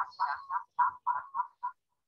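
A person's voice repeating one short syllable ("chát") about seven times in quick succession, thin and narrow in tone.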